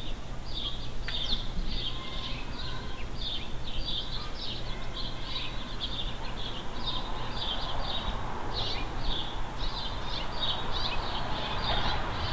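Birds chirping: a steady stream of short, high chirps several times a second, over a faint steady low hum.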